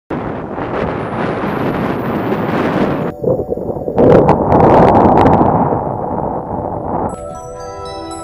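Storm wind blowing on the microphone, a loud rushing noise that breaks off briefly about three seconds in and comes back louder. About seven seconds in, soft background music with mallet-like tones takes over.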